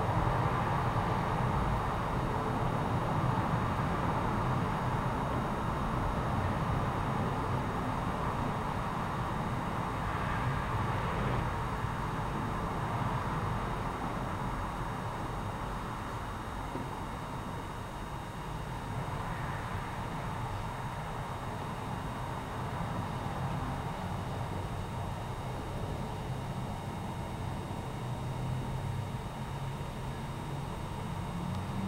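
Solid-state pulse charger's coil set giving a slight, steady hum while it pulses 300-plus-volt spikes into lead-acid batteries to desulfate them, heard over a steady hiss of background noise.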